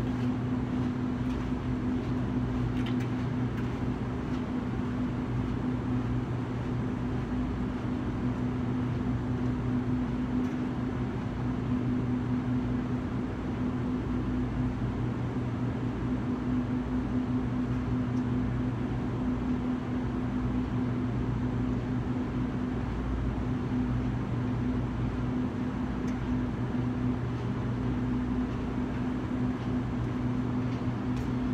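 Steady low mechanical hum with a constant pitched drone and no change in level.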